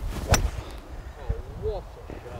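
A rescue (hybrid) golf club striking a ball off the fairway: one sharp, clean crack of impact about a third of a second in, a well-struck shot.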